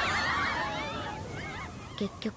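Sound from the anime episode playing: a rush of noise that fades away, with several high, wavering calls overlapping on top of it.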